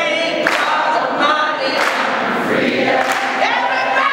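A woman singing at full voice into a microphone in a gospel style, with other voices singing along, the notes long-held and sliding.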